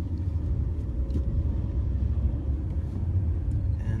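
Steady low rumble of a moving car, heard from inside its cabin.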